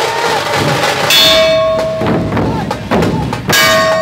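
Dhol drums of a dhol tasha troupe beating, with two loud metallic crashes that ring on for about a second, one about a second in and one near the end. The crashes fit clashes of the troupe's brass cymbals.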